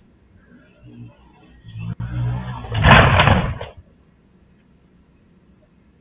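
Small dirt bike's engine building up to full throttle for a jump, loudest about three seconds in, then cutting off suddenly about a second later as the ride ends in a crash. The sound is thin and muffled, recorded through a home security camera's microphone.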